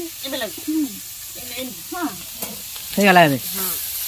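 Pieces of sea crab frying in oil in a metal wok, sizzling faintly while a metal spatula stirs them. Short bursts of voice break in a few times, the loudest about three seconds in.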